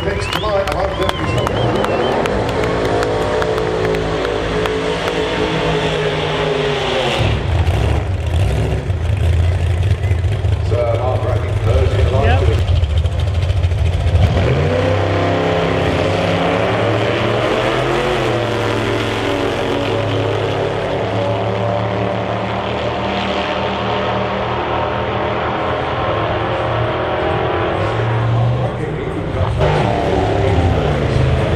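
Drag-racing cars' engines running and revving at the strip, pitch rising and falling several times, loudest about a quarter to halfway through.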